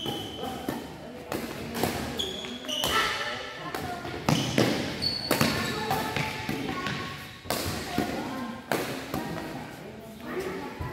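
Badminton rally: rackets hitting the shuttlecock in a string of sharp strikes, with short high squeaks from shoes on the court floor.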